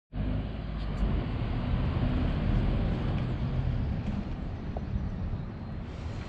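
Road traffic running past on a city street: a steady low rumble with no breaks.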